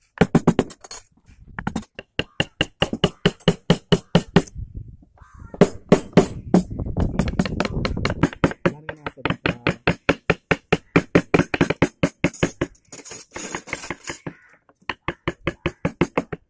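Wooden mallets tapping steel carving chisels into wood, a fast run of sharp knocks about five or six a second from more than one carver, pausing briefly twice.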